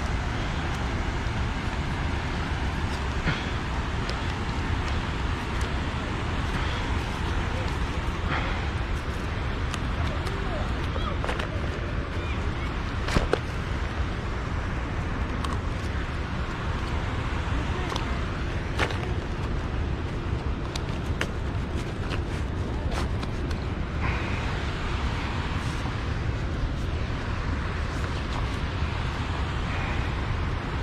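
Steady low rumble of wind and moving water on the microphone, with a few short, sharp splashes and knocks from a hooked striped bass thrashing at the water's surface as it is landed.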